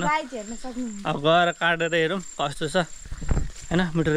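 A steady high-pitched insect trill from crickets or similar insects in dense vegetation, running unbroken under a man's talking, with a brief low rumble of wind or handling a little after three seconds in.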